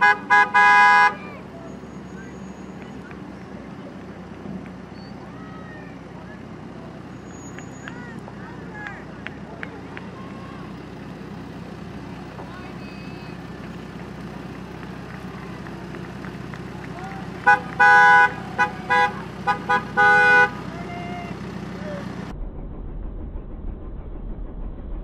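Car horns honking in short toots: a quick burst in the first second, then a run of about six short honks around 18 to 20 seconds in, over a steady background of idling vehicles.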